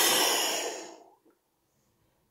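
A woman blowing hard through pursed lips, a long breathy whoosh acting out the wolf blowing the house down. It fades out about a second in.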